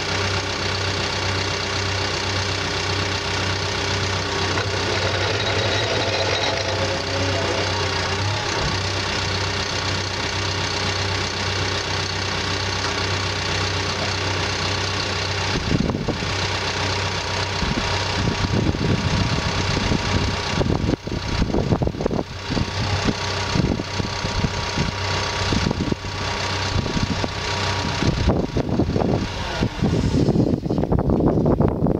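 Caterpillar D5K2 crawler dozer's diesel engine running steadily while the blade is worked on the hydraulics. From about halfway, gusts of wind buffet the microphone over the engine.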